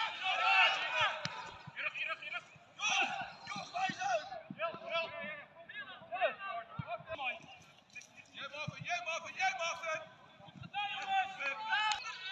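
Voices calling out and talking across a football pitch during play, in short bursts with brief gaps, and a few faint knocks in between.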